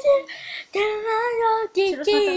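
A young girl singing solo: a short syllable, a brief pause, then a held note of about a second, with a few quick syllables near the end.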